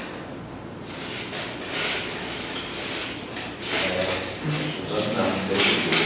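A classroom window being slid open: a few short scraping, sliding swishes, with quiet voices in the room.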